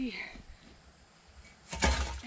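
A scythe blade swishing through dense ragweed in one quick, loud stroke near the end, after a quiet pause.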